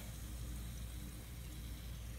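Steady low background hum with a faint even hiss; no distinct sounds.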